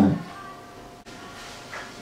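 A man's amplified voice ending a spoken line at the very start, then a pause of faint room noise with a soft click about a second in.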